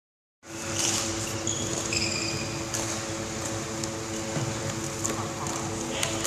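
Steady hum of ventilation or air conditioning in a large indoor sports hall, with a few brief high squeaks and light knocks over it.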